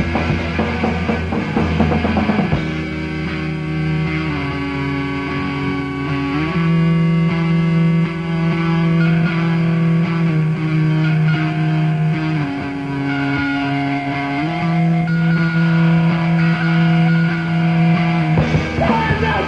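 Rock band demo recording in an instrumental stretch: guitars holding long chords that change every few seconds, with no vocals.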